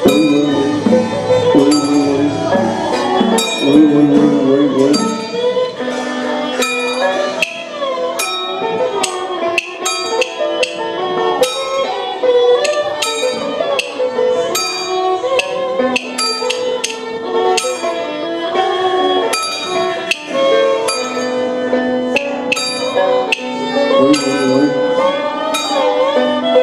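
Taiwanese Taoist ritual music: a melody on traditional instruments over a steady beat of sharp percussion strokes.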